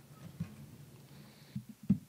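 Quiet press-room tone: a faint low hum and murmur with a few soft knocks, one about half a second in and a couple near the end.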